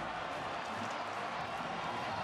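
Large stadium crowd cheering, a steady even noise of many voices with no single voice standing out.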